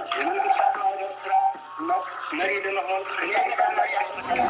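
A person's voice over background music, sounding thin with no bass, like a radio or sampled clip.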